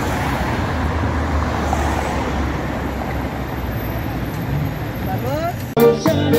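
Steady road traffic on a wide multi-lane city avenue, a low rumble of many cars' engines and tyres. Near the end it cuts off suddenly to a live band playing.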